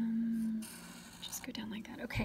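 A woman's voice: a short level hum at the start, then soft whispering.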